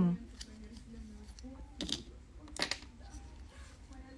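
Handling noise from a rolled paper nail form being fitted onto a finger, with two short rustles about two and two and a half seconds in.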